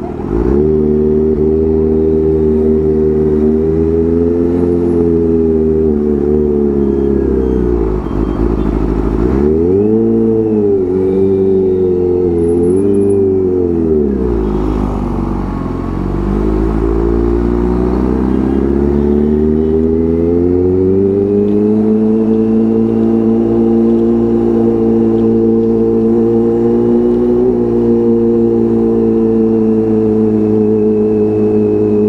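Kawasaki Ninja H2's supercharged inline-four engine heard from the rider's seat while riding slowly, its pitch rising and falling several times with the throttle in the first half, then holding a steadier note over the last third.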